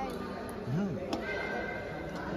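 Sports shoes on a badminton court floor: two light clicks and one brief high squeak a little after a second in. A short voice calls out under them.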